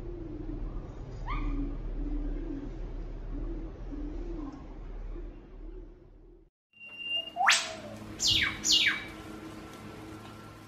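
Eastern whipbird calling: a short whistle, then a loud whip-crack note sweeping sharply upward, answered at once by two quick falling notes, as in a pair's duet. Fainter bird calls come in the first half.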